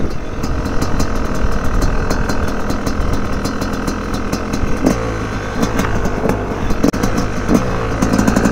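Dirt bike engine running while riding, under heavy wind noise on the microphone; the revs rise and fall twice in the second half, with a brief drop in throttle just before the second rise.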